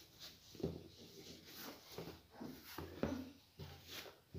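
Faint rustling and soft knocks of a cloth tote bag being handled as a hardcover book is fitted inside it and the bag is smoothed flat on a wooden tabletop.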